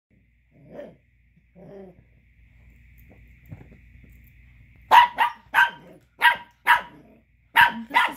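Chihuahua puppy giving two soft growls, then about five seconds in breaking into a quick run of about seven sharp, loud barks. The barking is angry, aimed at another dog chewing a bone he wants.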